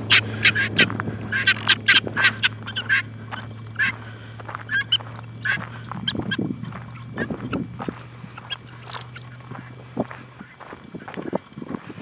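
A flock of helmeted guinea fowl calling: many short, sharp cries in quick runs, thickest in the first few seconds and more scattered later. A steady low hum runs underneath and stops shortly before the end.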